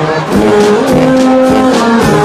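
Marching band of brass and saxophones coming in with held chords about a third of a second in, over its drums.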